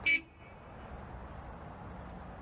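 A brief horn-like toot at the very start, then faint steady background noise.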